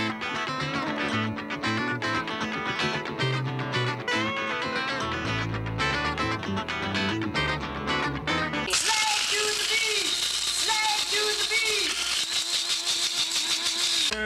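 Upbeat guitar theme music with voices for the first nine seconds or so. Then the music gives way to a loud, steady high-pitched whir of an electric blade coffee grinder, which cuts off suddenly at the end, with voices over it.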